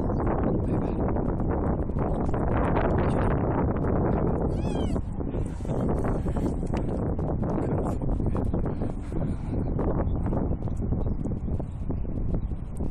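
Wind buffeting the microphone on an open, icy riverbank, a steady low rumble with crackles through it. About four and a half seconds in, a short high whine wavers up and down.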